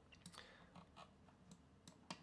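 Near silence broken by a few faint, irregular clicks of a computer mouse.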